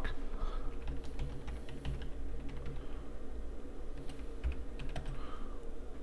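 Typing on a computer keyboard: a run of separate key presses over a steady low hum.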